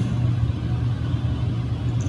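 A steady low hum with faint room noise under it, and no speech.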